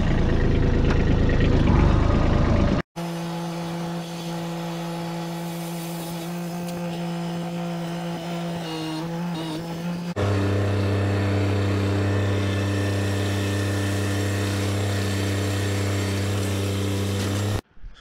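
Kubota compact tractor's diesel engine running at steady revs, heard in three cut-together stretches: a loud, rough, noisy first three seconds, then a steady engine note, then from about ten seconds in a lower, louder steady note as it works.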